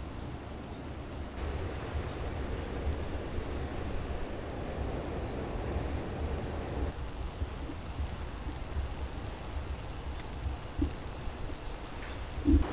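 Spiny lobster grilling on a wire grill over charcoal: a steady sizzle and crackle, changing in tone abruptly at about one and a half and about seven seconds in.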